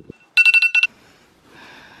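Smartphone alarm going off at wake-up time: a rapid run of high beeps on two pitches for about half a second, which cuts off suddenly just before a second in.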